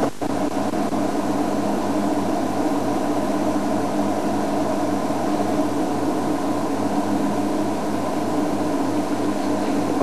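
Game-drive vehicle's engine idling, a steady even hum with no change in pitch. A short click right at the start.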